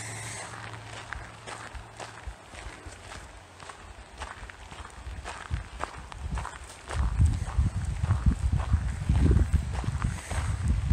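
Footsteps of a person walking over dry grass and dirt. From about seven seconds in, a loud irregular low rumble comes over the microphone.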